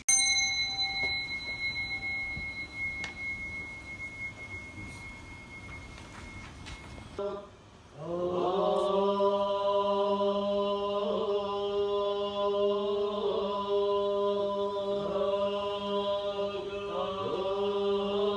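A bell is struck once and rings with high tones that fade slowly over several seconds. Then Buddhist ceremonial chanting starts about eight seconds in: voices holding one steady low note.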